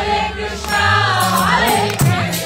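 Live kirtan music: devotional chanting over a steady harmonium drone, with one voice sliding up and down in pitch in the middle.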